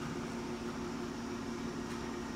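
Steady hum with an even hiss underneath, holding one level throughout, like a fan or appliance running.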